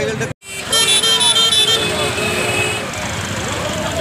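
A crowd of people talking and calling out on a roadside over traffic noise. A vehicle horn sounds steadily for about two seconds, starting just under a second in.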